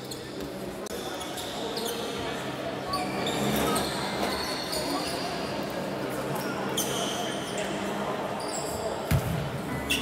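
A basketball being bounced on a hardwood court in a sports hall, with voices of players and coaches, and a single heavy bounce near the end.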